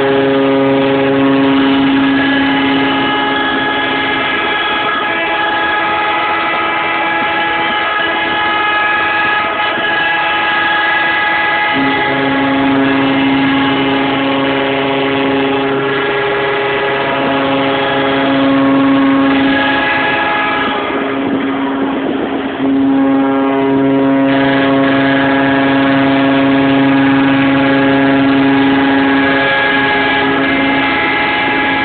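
Several ship horns sounding together as a salute for a cruise ship's float-out: long, steady blasts at different pitches that overlap and start and stop at different times. The deepest horns drop out briefly about two thirds of the way through.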